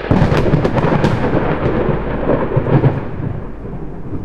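Thunderclap sound effect: it starts suddenly with a crack, then a rolling rumble slowly dies away.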